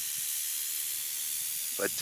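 Mojave rattlesnake (Crotalus scutulatus) rattling its tail in a steady, high-pitched buzz, a defensive warning.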